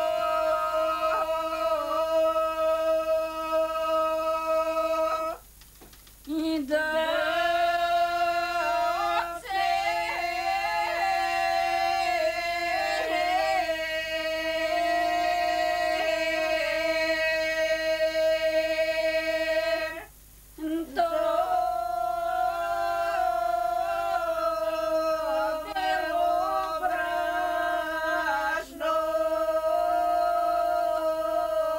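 A group of women's voices singing a Bulgarian Christmas (koleda) ritual song without instruments, the song for sifting the flour and kneading the ritual bread. They sing long held notes with small turns in pitch, breaking off briefly twice, at about six and twenty seconds in.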